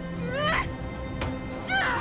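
A woman's high, strained whimpering cries, two rising wails about a second and a half apart, over a film score of steady held tones and low rumble; a sharp click falls between them.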